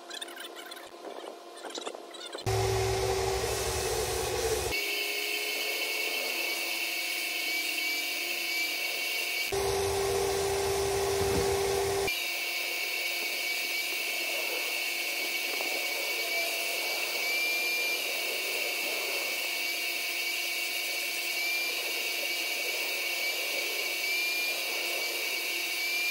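HVLP turbine spray rig running with a steady high whine while primer is sprayed through the gun. The sound changes abruptly twice, each time for a few seconds, adding a lower hum and a low rumble.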